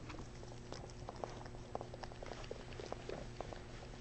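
Shih-tzu licking frozen yogurt out of a paper cup: faint, irregular wet licking clicks, several a second.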